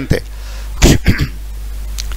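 A man briefly clears his throat about a second in, a short rough burst, over a steady low hum.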